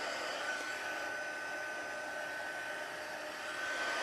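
Craft heat tool blowing steadily, an even hiss with a thin high whine, warming heat-embossed cardstock.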